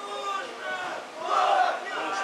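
Several men's voices shouting at once at a football match, growing louder a little past halfway.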